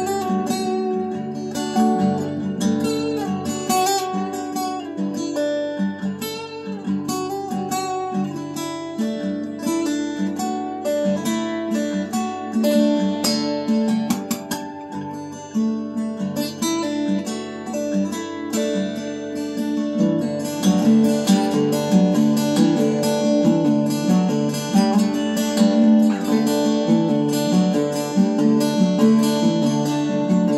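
Solo acoustic guitar with a capo, played with the fingers: a melody picked over chords, growing louder and fuller about two-thirds of the way through.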